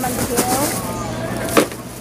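Black plastic bags rustling and crinkling as bean sprouts are handled and bagged, with a few sharp crackles, over faint background voices.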